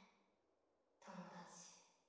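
Near silence, broken about a second in by one faint, short sound from a person's voice, like a sigh.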